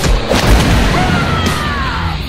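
Cartoon sound effects: a deep boom just after the start, then a whistle-like tone sliding down in pitch through the second half.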